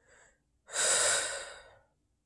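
A man breathing close to the microphone: a short faint breath at the start, then a longer, louder breath through the open mouth beginning about two-thirds of a second in and lasting over a second.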